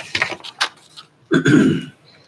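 A person coughing and clearing their throat: a few short coughs, then a longer throat-clear near the end.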